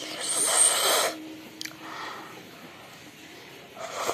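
A child eating pasta lets out a loud, breathy rush of air lasting about a second at the start, then quieter eating sounds follow as a spoonful of pasta goes into her mouth near the end.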